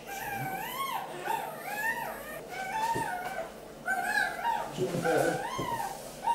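Newborn puppy crying: a run of short, high-pitched squeals that each rise and fall, about two a second.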